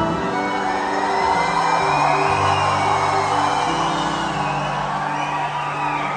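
Live rock band with acoustic and electric guitars, bass, drums and keyboard playing long held chords, the bass notes changing every second or so, with a crowd whooping and cheering over the music.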